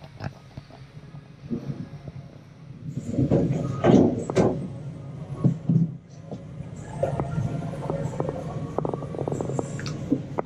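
A green marker squeaking and tapping on a clear plastic face shield while it is drawn on. Irregular squeaks are loudest a few seconds in, then come quick light ticks.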